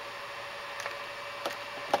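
Steady low hiss with a faint steady hum, broken by a few light clicks in the second half, the sharpest just before the end as the clamp meter is moved in the hand.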